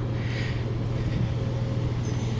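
A steady, low mechanical hum, even in level, with no knocks or other events.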